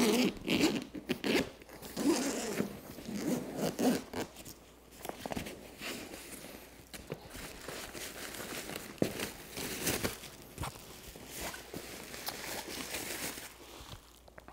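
Zipper of a padded guitar gig bag being drawn open in a run of rasps, then plastic wrapping crinkling and rustling as the guitar is slid out of the bag.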